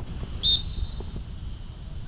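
Referee's whistle giving one short, sharp blast about half a second in, with a faint high ring trailing after it.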